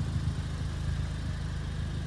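Ford Fiesta ST-2's 1.6-litre EcoBoost turbocharged four-cylinder idling steadily, a low even hum through its aftermarket Scorpion exhaust.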